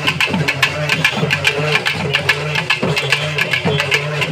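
Street procession drums, barrel drums hung at the hip, beaten in a fast, even rhythm of several strokes a second. A low wavering drone with gliding pitch runs under the strokes.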